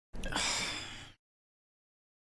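A sharp gasp: one quick, breathy intake of air lasting about a second, starting and stopping abruptly out of silence.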